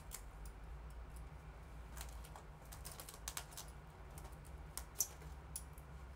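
Light, irregular typing clicks, a few taps at a time, with the sharpest click about five seconds in, over a faint steady low hum.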